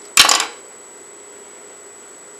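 A single short, sharp clatter of hand-work noise, about a third of a second long, just after the start.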